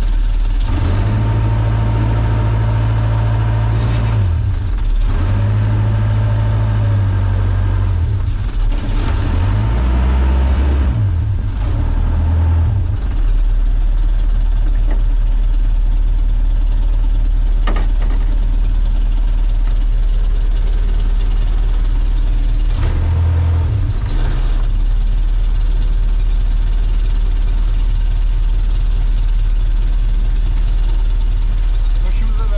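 Small fishing boat's engine running steadily, its speed changing several times in the first dozen seconds and once more briefly about 23 seconds in, then settling to an even run.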